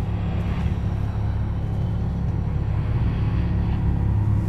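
Steady low rumbling drone with no distinct events, a dark ambient bed under a tense, silent moment in the score.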